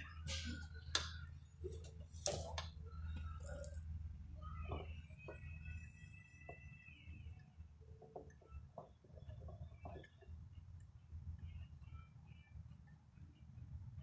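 Faint metal clicks and taps of a bearing-puller plate and its bolts being fitted onto a shaker gearbox's shaft end, scattered and irregular, densest in the first few seconds, over a steady low hum.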